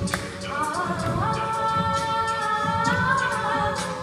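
A cappella vocal group singing, the voices holding chords that step up in pitch about a second in.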